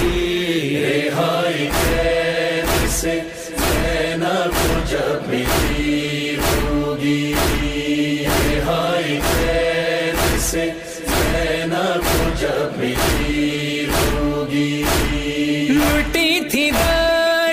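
A Shia noha (mourning lament) recording: male voices chanting in long held notes over a steady, evenly spaced percussive beat.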